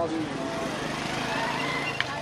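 Men's voices calling out over a steady background of street traffic noise.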